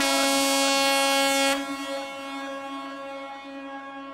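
A single long, steady horn-like tone with a rich buzzy timbre, loud for the first second and a half and then dropping away and fading slowly.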